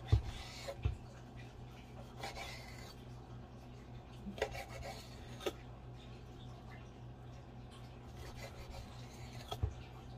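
Knife slicing through raw striped bass fillets on a bamboo cutting board: faint cutting sounds with a handful of soft knocks as the blade meets the board, the clearest right at the start and about a second in.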